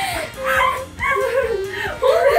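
Teenage girls' high-pitched voices in an emotional reunion, tearful whimpering and laughter, over background music.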